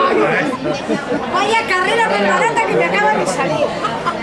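Several people talking over one another in lively chatter, in a large, reverberant room.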